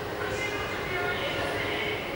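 Steady background ambience of a large indoor hall, a low even rumble with distant, indistinct voices.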